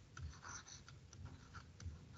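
Faint scratching and light taps of a stylus writing on a tablet screen.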